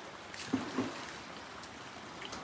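Steady rushing of a strong, fast-flowing river current.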